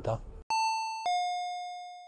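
Two-note 'ding-dong' doorbell chime sound effect: a higher tone, then a lower tone about half a second later that rings out and fades. It is edited in over dead silence to mark entering the shop.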